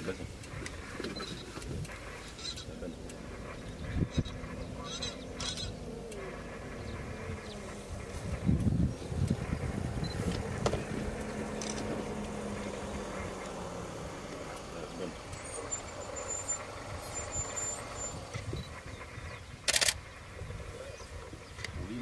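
Quiet outdoor ambience with faint low voices and a few short high chirps, broken by a couple of knocks and one loud short rustle about twenty seconds in.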